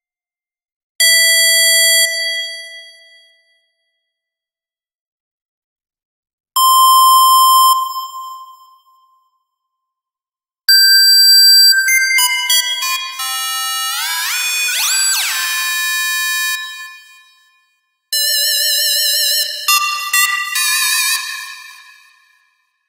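Synth notes from the Harmor software synthesizer, auditioned one at a time: two bright single tones, each fading out over a couple of seconds, then a quicker run of notes, some sliding up in pitch. Near the end the notes waver with vibrato as the pitch vibrato depth setting is being tried out.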